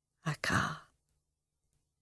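A woman's single breathy, sigh-like exhalation. It comes about a quarter second in with a short sharp catch at its start, then trails off in well under a second.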